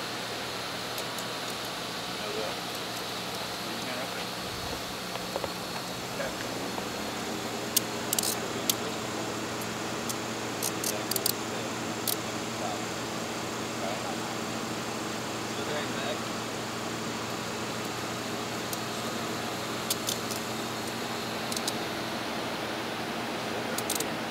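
Metal clicks and jingling of handcuffs and keys as a suspect is cuffed and searched, in short clusters, over a steady low hum.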